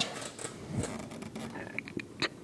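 Handling noise: scattered faint clicks and rustling as the phone moves around the bike's engine and frame, with a brief murmured voice partway through. No engine is running.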